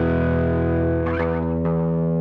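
Heritage H-150 solid-body electric guitar played through a Reaktor Blocks effects chain of Driver distortion, Chebyshev waveshaper and Euro Reakt tape delay. A distorted chord rings and sustains, and new strums come in about a second in and again shortly after.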